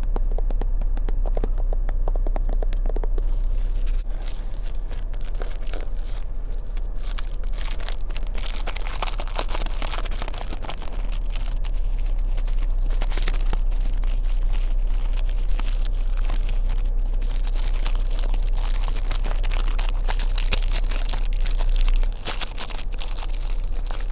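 Thin Bible pages being leafed through and crinkling, heaviest from about a third of the way in, over the steady blowing of a car's air-conditioning vent.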